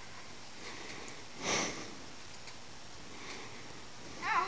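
A single short, breathy sniff close to the microphone about one and a half seconds in, over a faint steady hiss.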